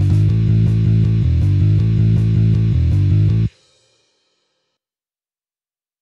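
Tab-software playback of an electric guitar part: power chords in a steady eighth-note rhythm. They cut off suddenly about three and a half seconds in, then silence for the rest bars.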